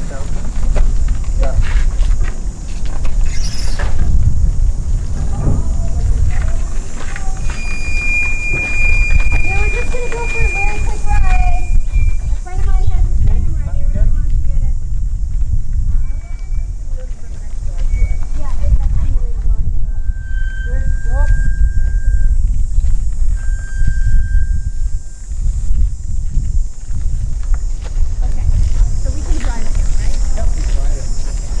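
Indistinct voices over a steady low rumble, with metal squeals from a human-powered art car's bicycle-type frame and wheels as it is pushed along: one long, steady high squeal about eight seconds in, and two shorter, lower ones past the twenty-second mark.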